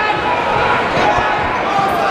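Fight crowd shouting and talking over one another, with a few dull low thumps.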